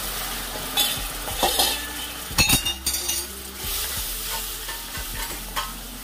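Roasted wheat flour sizzling and bubbling in an aluminium kadai after liquid has been poured in for sheero, stirred with a steel ladle that scrapes and clinks against the pan several times.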